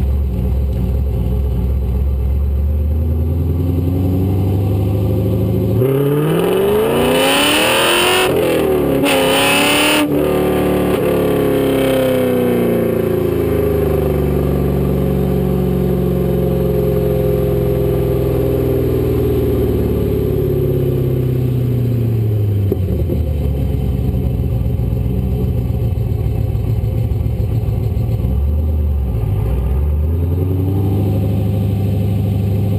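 1998 Camaro's LS1 V8 exhaust heard from beneath the car while driving: the engine note climbs in pitch under acceleration for the first ten seconds or so, then winds down slowly as the car eases off, settles to a low steady note, and starts to rise again near the end.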